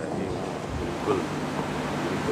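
Steady background noise with a low hum in a pause between sermon phrases, with a faint, indistinct voice about a second in.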